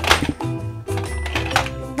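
Background music with a sharp plastic click and clatter near the start, as the button-triggered launcher of a toy Paw Patrol Mission Cruiser fires a small plastic toy vehicle out of its bay and down the ramp.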